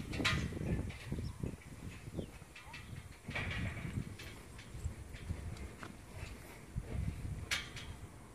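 Gusty wind rumbling on the microphone, with soft hoofbeats of a young horse moving on sand and a few sharp clicks, the loudest near the end.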